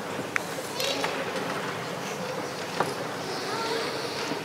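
Room noise of a gathered congregation: an indistinct murmur of voices, including a child's, with rustling and a few light knocks, the sharpest about three seconds in.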